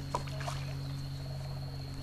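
Frogs croaking over a steady low hum, with a short sharp click near the start.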